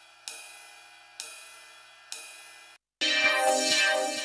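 Ride cymbal sample from a trap sample pack, played as a loop: a hit about once a second, each one ringing and fading. Just before the end it cuts off and a fuller trap loop starts, a pitched part over low drum hits.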